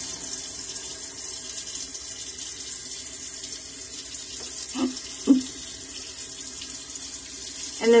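Steady, even hiss of water running from a tap, with two short vocal sounds about five seconds in.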